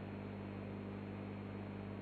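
Low, steady mains hum from a hand-wound power transformer for a valve amplifier, switched on with no load on its windings.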